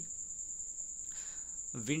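A steady, unbroken high-pitched tone fills a pause in the speech; a voice comes back in near the end.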